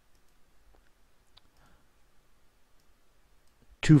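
A few faint, isolated computer mouse clicks.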